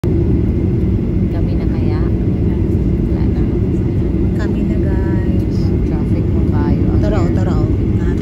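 Steady low rumble of a jet airliner's engines and cabin heard from inside the cabin while the plane taxis, with faint voices over it.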